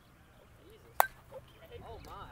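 A bat striking a softball once, a single sharp crack about a second in, with faint shouting voices of players around it.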